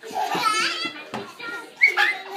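Toddlers' voices, high-pitched squealing and babbling without clear words, with a sharp squeal near the end.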